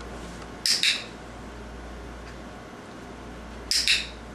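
Handheld training clicker pressed twice, about three seconds apart, each press a sharp double click of press and release. In clicker training each click marks the puppy's behaviour for a treat.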